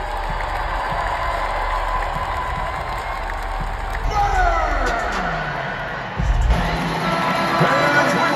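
Arena crowd cheering, mixed with music and a voice over the PA. About four seconds in, a long falling swoop sweeps down in pitch, followed by a low thump and music.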